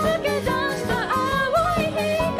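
Live rock band playing a J-pop song: female voices singing a bending melody over electric guitars, bass, keyboard and a drum kit.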